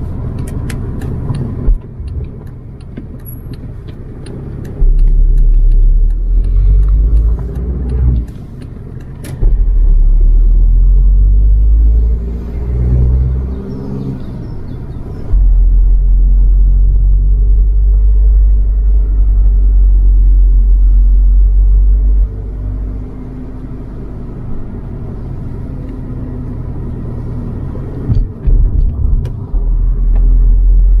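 Car driving along a country lane, heard from inside the cabin: constant engine and tyre rumble, with three long stretches of much heavier low rumble and a scattering of clicks and rattles in the first nine seconds or so.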